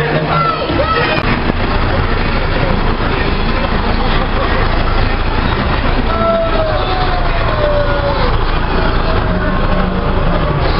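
Lorry engine running steadily at low speed as a balloon-decked parade lorry passes close by, a continuous low rumble, with people's voices over it.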